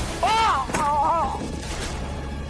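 Two high, wavering cries with a sharp hit between them, about a second in, as a man is thrown to the floor.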